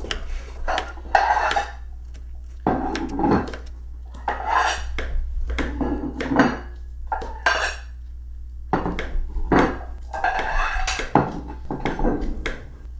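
Kitchen-knife strokes knocking on a plastic cutting board as a bell pepper is chopped, mixed with irregular clatter and clinks of dishes and cutlery.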